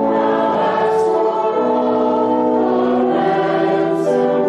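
Church congregation singing a slow hymn verse. Each chord is held a second or more before moving to the next.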